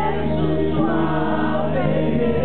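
Live acoustic rock performance: a male lead singer sings into a microphone over acoustic guitar.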